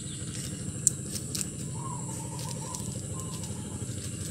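A small clear plastic bag handled while being fitted over a plant, giving a few sharp crinkles and clicks, the loudest about a second in, over a steady low hum and high hiss.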